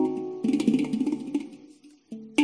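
Instrumental background music of ringing notes that die away, fading to a brief silence near the end.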